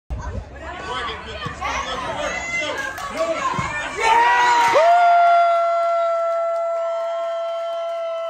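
Spectators' voices shouting and chattering at a youth soccer match, then a loud burst of cheering about four seconds in as a goal is scored. A single long, steady high note follows, held for about four seconds before it drops in pitch and stops.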